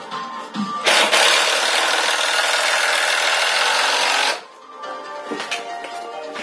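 Cordless drill driving a screw into a wooden form board: a loud, steady run of about three and a half seconds that starts about a second in and stops suddenly.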